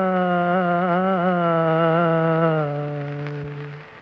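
The slow, unaccompanied-sounding melodic introduction of a Hindi film devotional song: one ornamented line, wavering and sliding between long held notes. It settles on a lower held note about two and a half seconds in and fades away shortly before the end.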